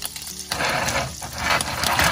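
Cut-up wieners sizzling in a cast iron skillet over a portable gas stove burner, a steady hiss that comes up about half a second in.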